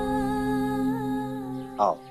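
Background score holding one long steady note, with a single word spoken near the end.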